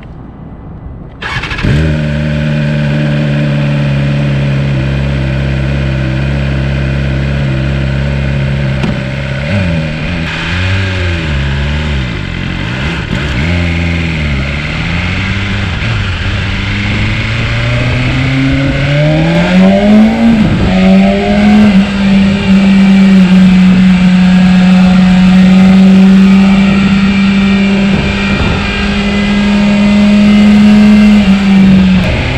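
BMW S1000RR's inline-four engine starts about a second and a half in and idles steadily. It is then blipped several times, revs climb as the bike pulls away, and from about twenty seconds on it runs at steady higher revs while riding.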